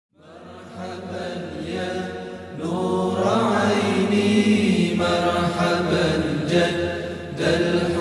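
Chanted singing, voices holding long, wavering notes. It fades in at the start and grows louder and fuller after about three seconds.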